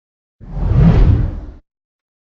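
A whoosh sound effect for an animated logo intro: a single deep rush of noise about a second long, starting about half a second in, swelling and then fading away.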